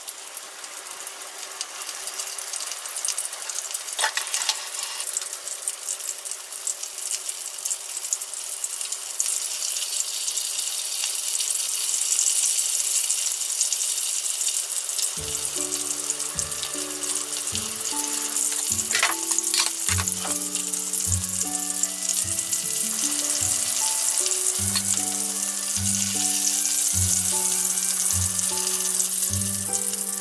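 Flour-dusted chicken drumettes deep-frying in a pan of hot oil, a steady sizzle that grows louder over the first dozen seconds as more pieces go in, with a few sharp utensil clicks. Background music comes in about halfway through.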